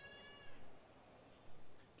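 A short, high-pitched, drawn-out voice-like cry that ends about half a second in, followed by faint sounds from the room.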